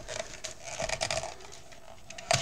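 Plastic craft punch and thin card being handled and pressed: light rustling with small scattered clicks, denser for a moment about halfway through. The card is stuck in a dull circle punch that will not cut through it.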